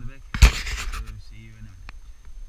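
A man's voice trails off, then comes a sudden thump and about half a second of loud rushing noise on the microphone. A short low hum and a click follow.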